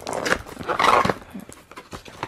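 Plastic packaging crinkling and tearing as a packet of socks is pulled out of an advent calendar box, in two rustling bursts in the first second, then faint rustles.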